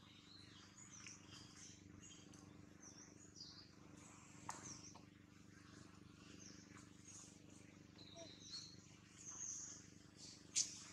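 Faint forest ambience: scattered short, high chirps come and go over a steady low hum.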